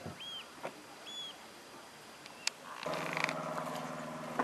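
Two short, high squeaks about a second apart, then a motor vehicle engine running steadily that starts abruptly about three seconds in.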